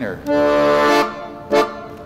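A Hohner Verdi III M piano accordion sounds one chord from its left-hand bass buttons. The chord is held steady for under a second and then released. It is a demonstration of the D major and D minor chords on the bass side.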